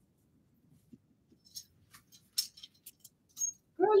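Faint, scattered clicks and scrapes of clothes hangers being pushed along a clothing rail as a dress is taken off the rack, with a light rustle of fabric.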